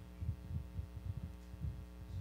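Steady low electrical hum in a corded handheld microphone's line, with a few faint, irregular low thumps.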